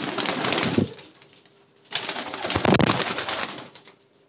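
Qasuri pigeons' wings flapping in two loud bursts, the first about a second long and the second, about a second later, nearly two seconds long, as the birds flutter down between perches.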